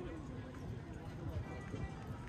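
Footsteps on the wooden planks of a pier deck, with the chatter of passers-by.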